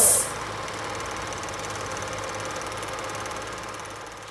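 A steady mechanical whirr with a fast, even flutter and a low hum, fading out near the end, after music drops sharply in pitch to a stop right at the start.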